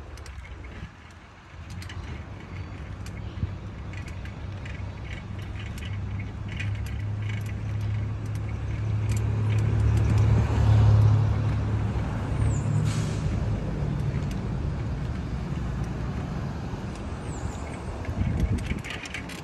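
Low rumble of wind on the microphone and street traffic while cycling along a city street. It swells to its loudest about ten seconds in, then eases, with faint scattered ticks.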